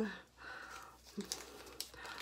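Faint crinkling of a paper gelatin packet being handled, a few light scattered crackles.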